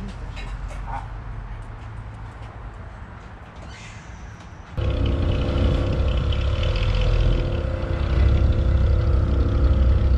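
Chevrolet Impala SS engine running at a low, steady idle as the car creeps backwards out of a garage. A quieter low rumble gives way, with a sudden jump about five seconds in, to a louder, steady engine note.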